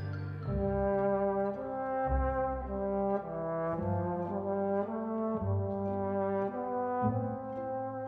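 Solo trombone playing a slow Adagio melody over a string orchestra, a line of held notes that change pitch every half second or so, with sustained low string notes beneath.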